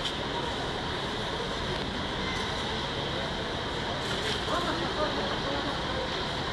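Steady hum of a bus terminal, with an arriving double-decker coach's engine running at low speed and faint voices in the background.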